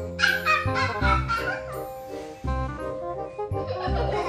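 Background music with a steady beat. Through the first second and a half, high-pitched sliding cries sound over it.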